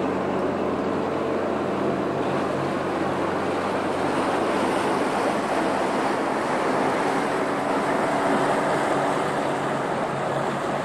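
The passenger ferry Oldenburg's diesel engines running steadily as she passes close by, a low hum under the rushing churn of water from her wash, swelling slightly toward the end.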